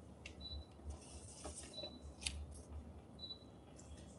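Faint room tone with a low steady hum, broken by a few soft clicks and short high-pitched chirps about every second and a half.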